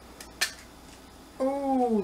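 A sharp click from small metal jewelry findings handled in the fingers about half a second in, then a woman's drawn-out voiced sound near the end.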